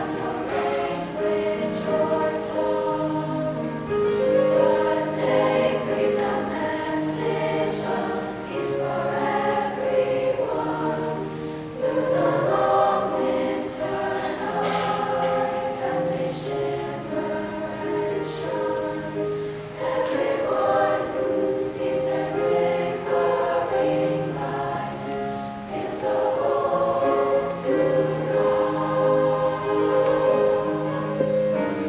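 A large treble choir of girls singing in harmony, several parts at once, in long held notes.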